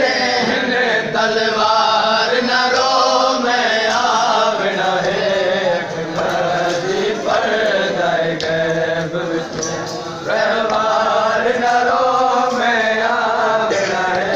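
Men's voices reciting a nooha, a Shia lament, as a sung chant without instruments; the chanting dips briefly about ten seconds in, then picks up again.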